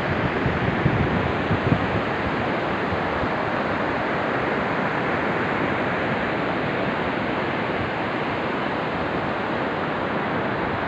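Steady wash of ocean surf breaking on the beach, with wind buffeting the microphone in a few gusts during the first couple of seconds.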